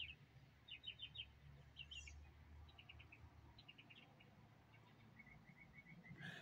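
Faint bird chirping: scattered short, quick high notes, with a run of evenly spaced chirps near the end.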